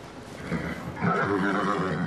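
A horse nickering: a low, pitched call starting about halfway through and lasting about a second.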